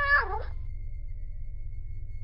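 A domestic cat meowing: one drawn-out call that bends down in pitch at its end and stops about half a second in, over a low steady hum.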